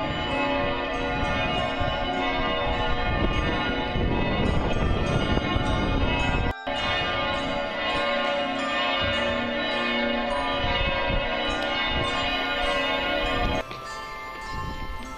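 Church bells pealing: several large bells ringing at once in a dense wash of overlapping tones, with a brief break about six and a half seconds in.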